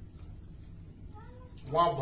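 A pause in a man's amplified speech, with low room tone and a faint, brief, high wavering call about a second in. The man resumes speaking near the end.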